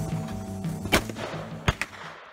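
Two sharp shots from an AR-15-style rifle, about three quarters of a second apart, the second followed closely by a fainter crack.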